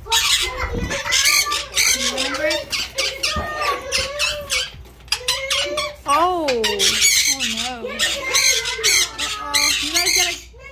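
Pet parrots squawking harshly again and again, with lower warbling, swooping calls between them.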